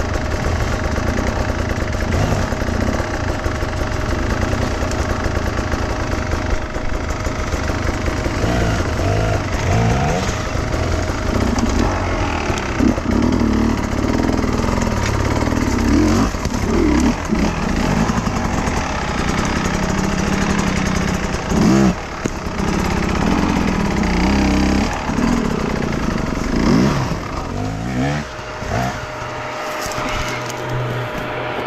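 Sherco 300 enduro motorcycle engine run hard in short, uneven revving bursts as the bike picks its way up a steep trail, with another dirt bike running ahead. The revving eases off near the end.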